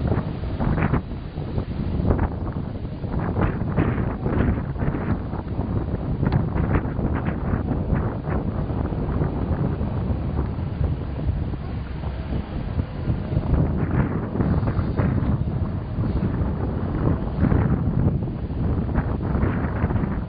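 Locomotive hauling a train of ballast hopper wagons, running along the track and drawing away: a continuous rumble with frequent short knocks. Wind buffets the microphone throughout.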